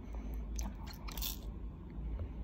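A 5-month-old baby gumming and chewing a plastic ring teether: a run of short, wet mouth clicks and smacks, busiest just after a second in.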